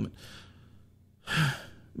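A man's audible sigh about a second and a half in, an airy breath with a little voice in it, after a fainter breath at the start.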